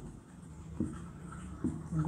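Marker pen writing on a whiteboard: faint scratching strokes with a couple of light ticks.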